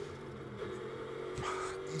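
Onboard sound of a Mercedes-AMG GT3's V8 engine running at a steady note at constant revs.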